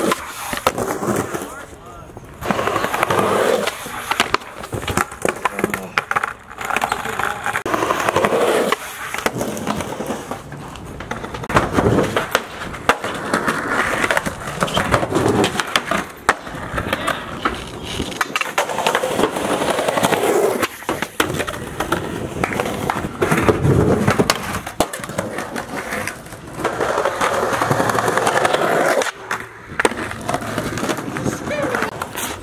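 Skateboards rolling on concrete sidewalk, with repeated sharp tail pops and wheel landings as skaters ollie over a root-heaved slab.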